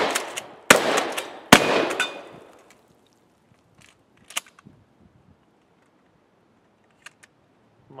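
Pump-action shotgun fired in quick succession, shots under a second apart, each report trailing off in a ringing tail. After a pause, a single sharp metallic click as a shell is loaded from the side-saddle, then faint small clicks near the end.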